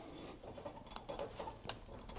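Faint handling sounds: a few light metallic clicks and rubbing as a half-inch wrench is fitted onto the water pump pulley bolts.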